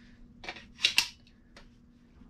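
A clear polymer .22 LR magazine pushed into the magazine well of an AR-style lower receiver, making a few plastic-on-metal clicks, the two loudest close together about a second in as it seats.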